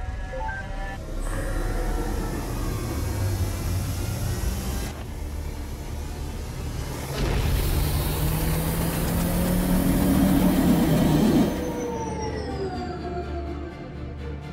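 Sci-fi spaceship engine sound effect as the ship lifts off and flies away. A loud rushing noise comes in twice, and the second time it is louder with a low rising hum before cutting off sharply near the end. Background music plays underneath.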